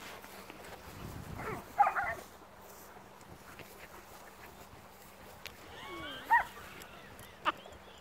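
A dog barking and yelping in short calls during rough play: a quick cluster about two seconds in, another sliding call a little past six seconds, and a sharp short sound near the end.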